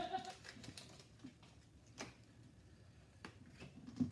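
Faint, scattered clicks and ticks of hockey cards and packs being handled on a table, with a louder click about halfway through. The tail of a laugh is heard at the very start.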